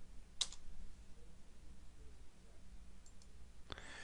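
A single sharp click of a computer key or mouse button about half a second in, as the typed command is entered, then low room tone with a couple of faint clicks about three seconds in and a soft hiss just before the end.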